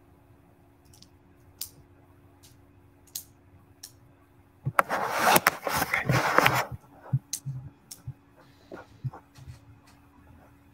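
Close handling noise near a computer microphone: a few scattered clicks, then about two seconds of loud rustling and clattering about five seconds in, followed by a few light knocks.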